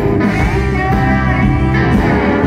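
Live blues-rock band playing loudly: electric guitar over bass and drums, with a woman singing at the microphone and a note bending upward early on.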